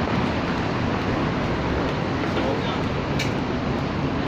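Steady city street noise of road traffic, with a single short click about three seconds in.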